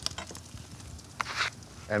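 Diced onion added by hand to hot rendered bacon fat in a pan on a charcoal grill, frying with a low, steady sizzle and a few short crackles, the loudest a little past halfway.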